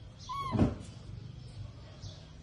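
A baby monkey gives one short squeaking call that rises and falls, running into a low bump about half a second in.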